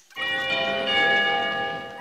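Airport public-address chime: several bell-like tones ring out and hold together, loudest about a second in, the attention signal that comes before a boarding announcement.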